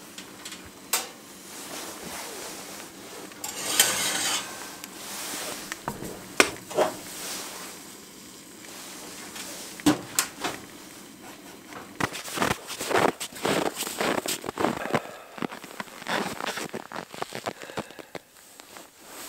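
Clinks and knocks of cookware being handled: a steel pan and a cup set down on a wooden board, with a short rushing noise about four seconds in and a quick run of clicks and knocks near the end.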